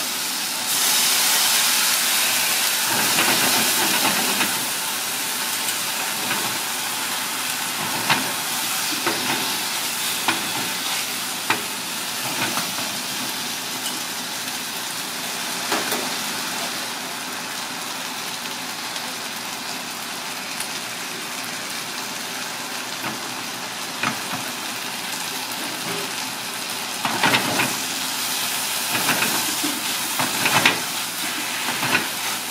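Fish and vegetables sizzling in sauce in a hot cast-iron wok over a gas flame: a steady frying hiss that swells for a few seconds just after the start, broken by occasional sharp clacks of a metal ladle against the pan, bunched together near the end.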